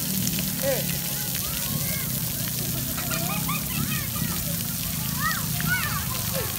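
Floor fountain water jets spraying and splashing onto wet paving, a steady hiss of water, with voices calling out briefly now and then.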